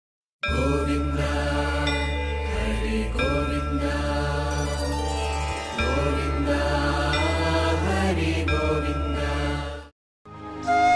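Devotional intro music: a chanted mantra over a steady low drone and sustained tones, starting about half a second in and stopping just before the end.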